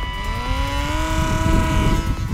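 Electric motor and propeller of a WLtoys F959 Sky King RC plane whining, rising in pitch over the first second as it spins up to part throttle, then holding steady. Wind rumbles on the microphone underneath.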